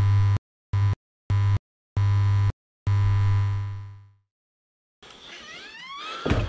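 Intro sound effect: a low, buzzy electronic tone chopped into five stuttering bursts of uneven length, the last one longer and fading away.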